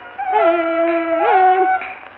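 Kunqu opera singing with a dizi flute doubling the melody an octave above, from a 1931 Victor 78 rpm record: long held, slightly wavering notes that step up and down. The old recording cuts off everything above about 4 kHz.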